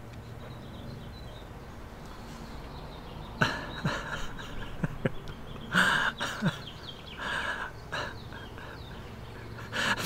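A man's quiet, breathy laughter in several short bursts, starting about three and a half seconds in, over a steady low background hiss.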